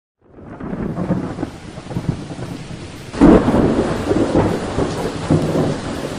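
Thunderstorm sound effect: rain and rumbling thunder fade in, then a loud thunderclap breaks about three seconds in and rolls on.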